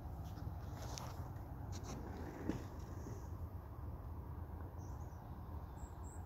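Faint outdoor background: a steady low rumble with a few short, faint high chirps scattered through it and a single tick about two and a half seconds in.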